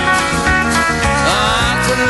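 Instrumental passage of a country song: a band with a steady beat under a lead line that slides in pitch about one and a half seconds in.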